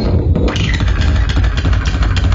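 Live electronic noise music: a loud, dense crackling texture over a heavy low rumble, with rapid clicks.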